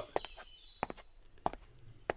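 Quiet footsteps of a man walking at an easy pace: three soft steps, a little under a second apart.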